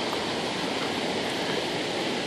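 Steady rushing hiss of rain and floodwater from a flooded creek running through woodland, even throughout with no distinct events.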